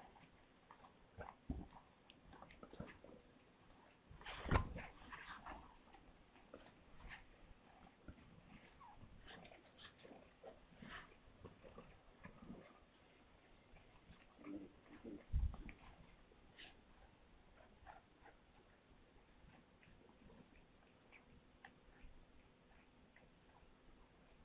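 Faint licking and rustling as a calico mother cat grooms her newborn kitten, with two soft thumps, about four and fifteen seconds in.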